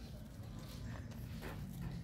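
Faint, irregular crunching of Aldabra giant tortoises chewing lettuce leaves, over a low steady rumble.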